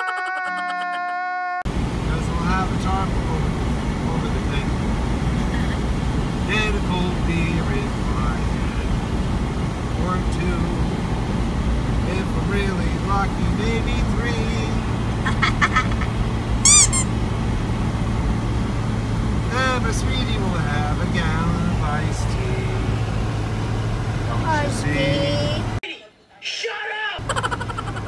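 Inside a moving car on a wet road: a steady low hum and tyre noise, with short bursts of voices now and then. It opens with a second or so of a man's wailing cry from an inserted clip, and the road noise drops out briefly near the end before talk resumes.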